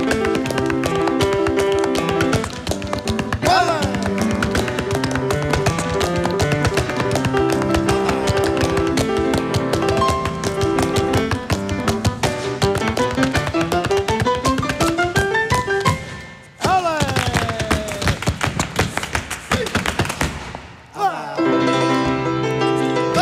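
Instrumental flamenco alegrías on grand piano, with hand-clapped palmas and sharp percussive strokes that fit zapateado footwork on the stage floor. In the middle the piano climbs in a long rising run, then cuts off briefly before the rhythm resumes.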